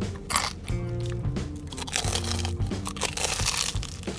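Crunchy bites into the crumb-coated fried crust of a Korean corn dog: a sharp crunch just after the start, then a longer run of crunching in the second half, over background music.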